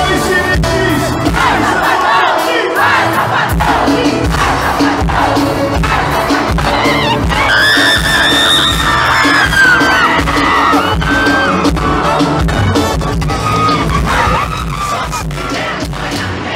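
Live forró band music heard loud from within the audience, mixed with a crowd singing and shouting along. The high voices come through strongest for a few seconds around the middle.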